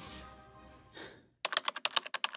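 Background music fading away, then, a little over halfway through, a sudden run of rapid keyboard-typing clicks, about ten a second.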